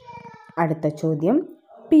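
A cat meowing: one drawn-out call that ends about half a second in, followed by a woman's voice.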